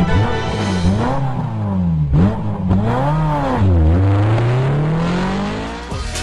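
Car engine revving up and down three times, its pitch climbing and dropping, with a last slow climb toward the end, over music.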